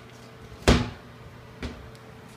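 Cabinet doors being opened and shut: a loud bang of a door about two-thirds of a second in, then a lighter knock near the end.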